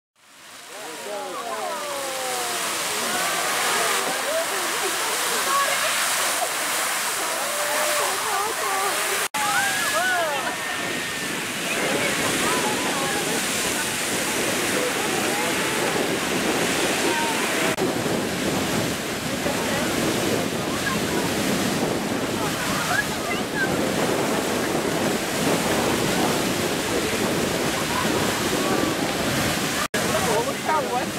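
Beehive Geyser erupting: a steady, full rushing roar of its water-and-steam column. It fades in at the start, with a brief dropout about nine seconds in.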